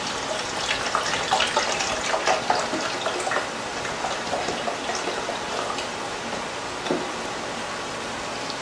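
Chicken broth pouring from a carton into a glass measuring cup as it fills, over the crackle of vegetables sizzling in a pan. A single knock near the end as the carton is set down on the wooden counter.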